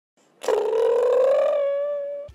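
A single sustained pitched tone from an animated logo intro, starting about half a second in, gliding slightly upward and then holding as it fades.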